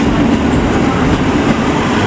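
JR Central KiHa 85 series diesel multiple unit running past at low speed: a steady, loud mix of diesel engines and wheels on rails.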